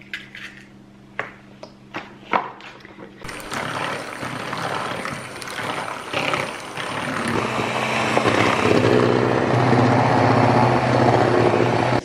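A few clicks as the beaters are fitted into a Bosch electric hand mixer, then the mixer runs steadily with a high whine from about three seconds in, beating eggs into foam in a plastic bowl for a sponge-cake base. It gets louder from about seven seconds in.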